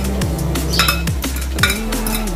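Background electronic music with a steady beat and falling bass notes, over a few light clinks of a metal fork and spoon against a glass bowl as a shredded cabbage salad is tossed.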